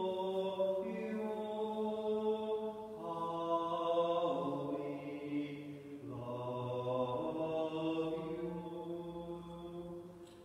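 A slow hymn of long held sung notes that move from one pitch to the next about every second or two, played during the offertory.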